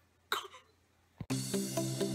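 Brief breathy throat sound from a woman, then near silence; past halfway a click and instrumental outro music starts, with a light steady ticking beat.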